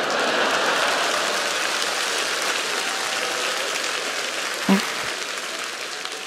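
Studio audience applauding, starting at once and slowly dying down.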